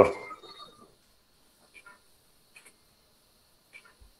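A man's voice trails off at the very start, then near silence: only a faint steady high-pitched whine and three faint, soft clicks spread through the rest.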